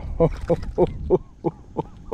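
A man laughing: a run of short pitched bursts, about three a second.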